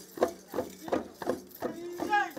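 Traditional dance rhythm: sharp beats about three a second from the dancers' stamping feet and leg rattles, with short pitched vocal calls between the beats.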